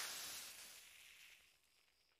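Steam hissing from a container, starting loud and fading away over about a second and a half.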